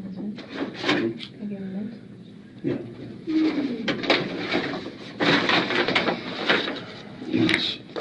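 Indistinct speech that the transcript did not catch, with a few light handling clicks near the start.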